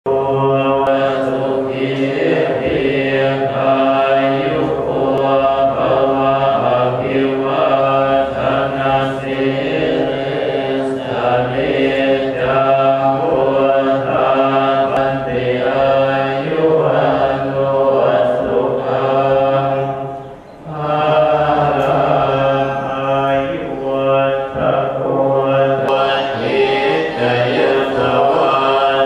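Buddhist monks chanting together in a steady, continuous monotone, with one brief pause for breath about three-quarters of the way through.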